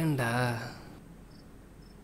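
A voice speaking briefly, then faint, sparse cricket chirps as night-time ambience.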